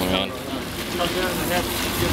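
People's voices over the steady low rumble of a boat's engine and churning water.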